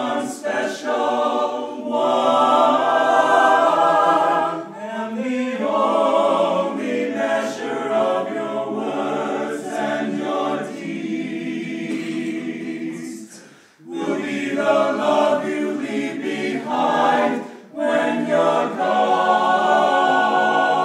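Small men's vocal ensemble singing a cappella in close harmony, in long held phrases. The singing breaks off briefly about two-thirds of the way in and again shortly before the end.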